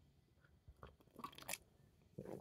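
Near silence broken by a few faint, short mouth clicks and swallowing sounds about halfway through, as a drink is sipped from a mug.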